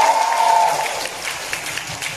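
Crowd applause, many hands clapping irregularly and growing gradually softer.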